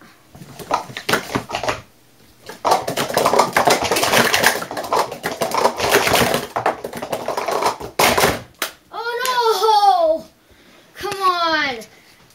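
Plastic Speed Stacks cups clattering on a stacking mat as they are stacked and unstacked at speed: a few taps, then a dense run of quick clicks for about six seconds. Near the end come two short, high, wavering voice sounds.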